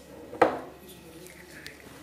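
A single sharp clink of a ceramic plate against the table about half a second in, with a brief ring.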